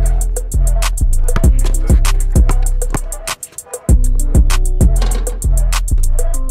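Background music: a hip-hop beat with rapid hi-hat ticks and deep bass kicks about twice a second.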